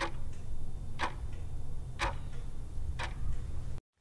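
Countdown timer's clock-ticking sound effect: four sharp ticks, one a second, each followed by a fainter tock, over a steady low hum.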